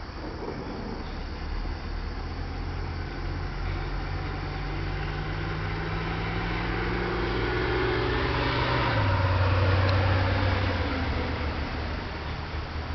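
A motor vehicle's engine running with a steady low hum. It grows louder to a peak about three quarters of the way through, then fades.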